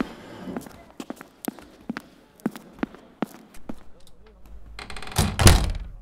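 A string of sharp knocks, then a door slamming shut about five seconds in, the loudest sound.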